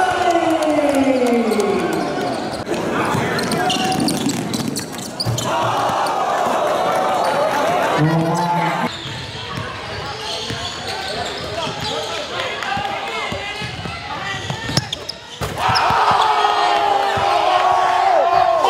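Gym game audio: a basketball bouncing on a hardwood court amid the voices of players and spectators. About two thirds of the way through the sound changes abruptly, and a crowd of voices breaks into loud, excited shouting.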